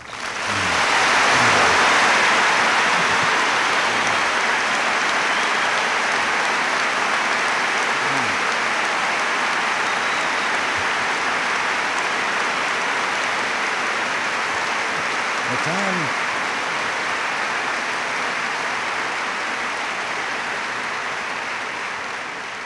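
A large audience applauding at length. The applause swells to full within the first two seconds, holds steady, then slowly tapers. A few faint shouts rise above it about a third and two thirds of the way through.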